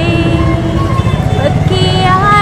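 A song with a woman's voice holding long, gliding notes, over busy street traffic noise.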